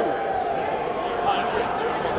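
Murmur of voices in a large gym with a few faint knocks, after the loud talk stops.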